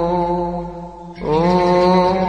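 Coptic liturgical chant: a cantor singing a long, slowly wavering hymn line over a steady low held note. The melody fades to a brief lull just before the middle, then a new phrase starts a little past the middle.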